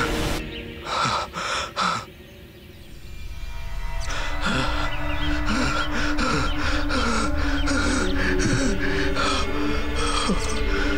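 A man gasping loudly for breath twice, a second or so apart. From about four seconds in, tense background score enters: a steady low held note under an even, pulsing beat.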